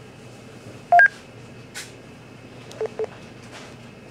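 Electronic beeps: a loud two-note beep rising in pitch about a second in, then two short, lower, quieter beeps near the end.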